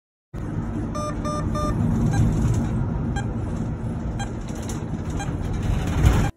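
Intro sound effect: a steady low rumble like vehicle or traffic noise, with electronic beeps over it. There are three quick beeps about a second in, then one beep roughly every second.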